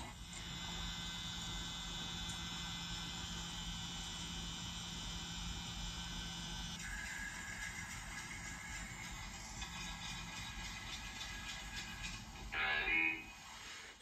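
Soft background music of sustained chords that shift to a new chord about halfway through. About a second before the end comes a short, louder sound effect.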